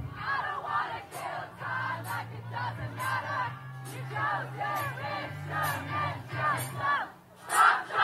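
Concert crowd singing along loudly in unison with a rock band, the band's music underneath. The crowd surges louder just before the end.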